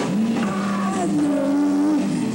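Live alternative rock band, with an electric guitar holding long, distorted notes that slide up in pitch at the start and drop away near the end.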